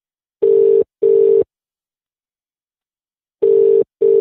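British telephone ringing tone heard down the line: two double burrs, each a pair of short steady tones, with a pause between the pairs. It is the sign of a call ringing out unanswered.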